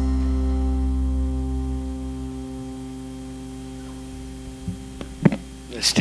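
The last held chord of a live band (electric and acoustic guitars, bass guitar, keyboard) dying away over about three seconds, leaving a steady electrical hum. A couple of short knocks near the end.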